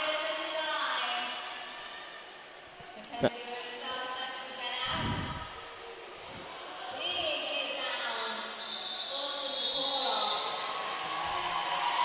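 Arena crowd hubbub with roller skates rolling and knocking on the hall's concrete floor, a sharp knock about three seconds in and a dull thud around five seconds.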